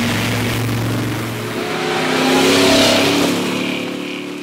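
A motor vehicle driving fast, with engine hum and loud rushing road noise. The engine note climbs and grows louder in the second half.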